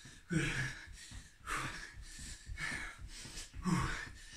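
A man panting hard, several loud breaths about a second apart, over quick thudding footfalls on a rug as he sprints on the spot with high knees.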